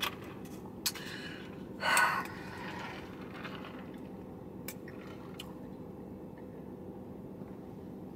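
A short noisy sip of lemonade through a plastic straw about two seconds in, with a few softer ones after it. Underneath is a low steady hum, with a few faint clicks.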